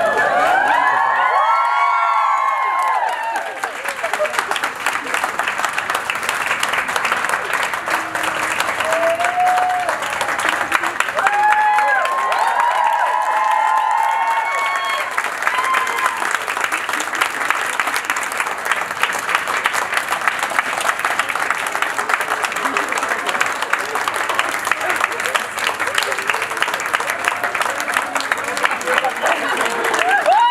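Audience applause: a dense, steady patter of many hands clapping, with voices shouting and whooping over it in the first few seconds and again around ten to fifteen seconds in.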